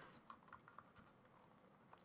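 Faint computer keyboard typing: a few scattered keystrokes.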